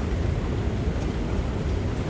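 Steady low rumble of a London Underground escalator running, with faint ticks about once a second.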